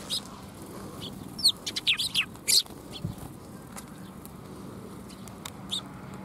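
Eurasian tree sparrows chirping: a quick run of several short, sharp, high chirps about a second and a half in, then a couple of faint chirps near the end.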